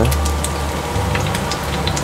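Vegetable fritters (ote-ote) sizzling in hot oil in a frying pan: a steady frying hiss full of small crackling pops, over a low steady hum.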